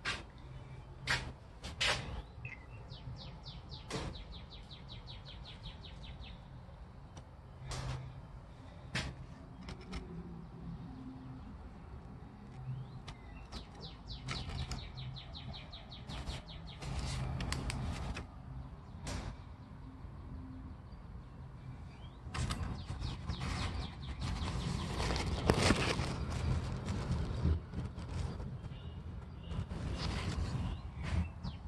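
Birds chirping, with rapid high trills twice, amid scattered clicks and rustles. A louder rustling stretch comes near the end.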